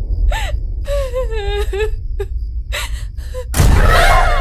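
A frightened woman gasping and whimpering over a steady low rumbling film-score drone. A sudden loud burst of noise comes near the end.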